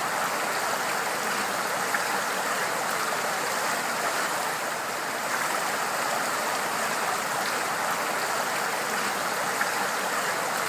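Three fountain jets shooting up and splashing back into a shallow pool: a steady rush of falling water.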